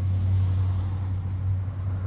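Steady low motor hum, even and unbroken.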